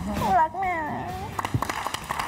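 A woman crying as she speaks, her voice breaking into a wavering, rising-and-falling wail. A few short sharp clicks follow in the second half.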